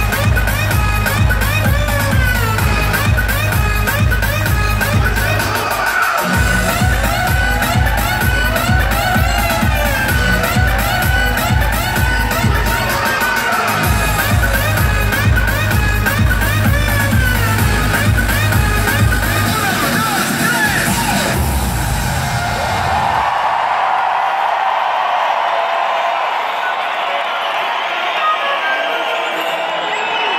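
Electronic dance music played loud over an arena sound system and heard from within the crowd: a steady kick-drum beat under rising and falling synth lines, with two short breaks in the beat. About three-quarters of the way through, the kick and bass stop, leaving a held synth sound with crowd cheering.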